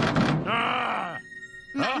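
Animated character's strained groan of effort over background music, as she wrenches at a locked cabinet door. A short spoken line follows near the end.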